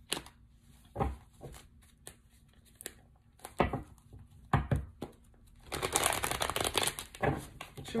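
A deck of tarot cards being handled and shuffled: scattered taps and clicks of cards. About six seconds in comes a rapid run of card flicks lasting about a second and a half.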